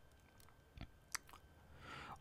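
Near silence: room tone, with two or three faint short clicks in the second half.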